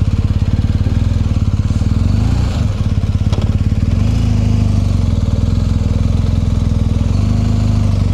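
BMW GS motorcycle's boxer twin engine idling with an even pulse. Its pitch lifts briefly about two and a half seconds in, then it settles a little faster from about four seconds on, with a single sharp click a little after three seconds.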